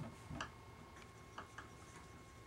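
Marker writing on a whiteboard: a handful of faint, short ticks and scratches as letters are written.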